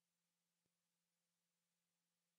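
Near silence: the narration has paused and the soundtrack is essentially silent.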